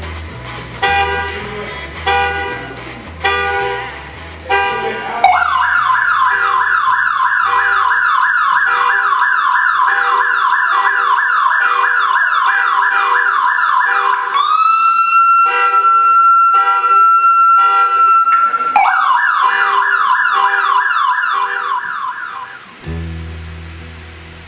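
Electronic vehicle siren in a fast yelp of repeated rising sweeps, switching to one steady held tone for a few seconds midway, then yelping again before it stops. Background music with a beat plays at the start and returns near the end.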